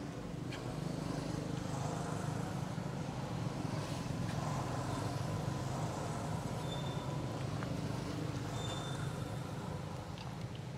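Steady low rumble of a motor vehicle's engine, growing a little about a second in and then holding, with a couple of short faint high peeps in the second half.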